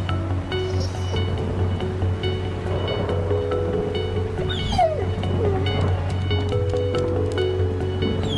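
Soundtrack music with long held notes over a steady hiss. A little past halfway a dog whines with a couple of short falling whimpers.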